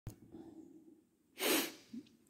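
A click at the very start, then one short, sharp breath by a man about a second and a half in.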